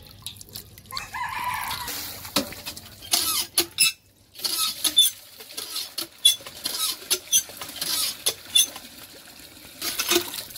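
Cast-iron village hand pump worked stroke after stroke, its handle and plunger clanking and squeaking about once or twice a second, with water gushing from the spout into a steel bowl.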